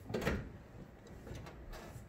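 A car door's inside handle and latch being worked, with a brief clatter near the start and then faint handling noise; the door is sticking and won't open, which the owner thinks needs grease.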